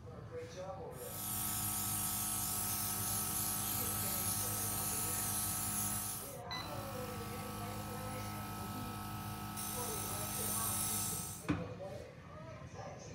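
Airbrush spraying colour onto a cookie through lace fabric: a steady hiss of air over the hum of its small compressor. It runs in two long bursts with a brief break in the middle and stops near the end with a light knock.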